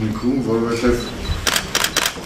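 A man speaking in Armenian, with a quick run of about four sharp clicks near the end.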